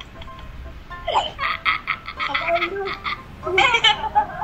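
A person laughing in a run of rapid, evenly repeated pulses, about six a second, after a brief falling squeal; another burst of laughter comes near the end.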